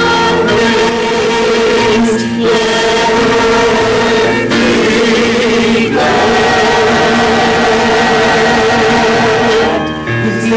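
Mixed church choir singing a hymn with piano accompaniment, holding long notes in phrases broken by brief breaths.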